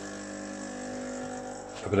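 Lelit espresso machine's pump running with a steady hum as an espresso shot is pulled.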